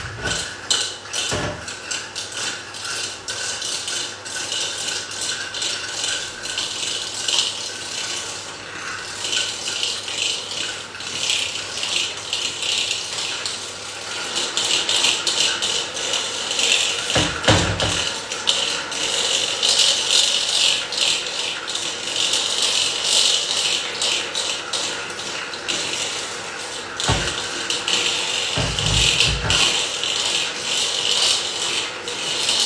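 Electric hand mixer beating butter, sugar and vanilla sugar in a bowl, its beaters whirring and rattling steadily as the mixture is creamed. A few dull knocks come in the second half as the beaters bump the bowl.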